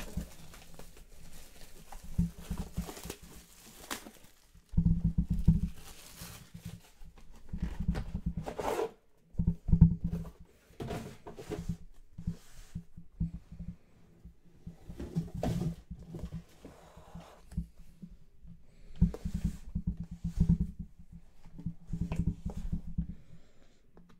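Hands handling an aluminium card briefcase on a tabletop: irregular knocks, thumps and rubbing, the loudest knock about ten seconds in.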